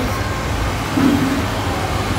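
Steady low rumble of outdoor background noise, with one short hummed 'mm' from a voice about a second in.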